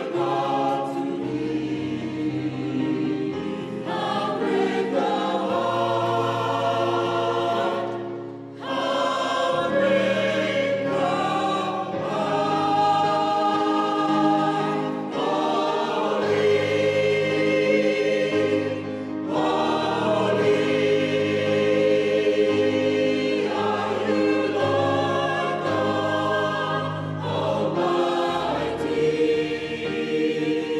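Mixed choir of men's and women's voices singing a Christmas carol in parts, with sustained phrases and a brief breath break about eight and a half seconds in.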